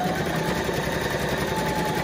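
Domestic electric sewing machine running steadily, stitching a seam with rapid needle strokes and a faint steady motor whine.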